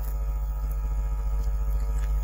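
Steady electrical hum with a buzz of many even overtones, unchanging throughout: mains hum picked up by the recording setup.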